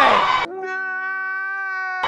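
Crowd shouting that cuts off suddenly about half a second in. It is replaced by a single steady held tone, rich in overtones and with no background behind it: a sound effect dropped in by the editor as she falls.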